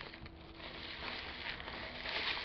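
Faint rustling and crinkling of plastic bubble wrap as hands handle a wrapped parcel and slide its ribbon off.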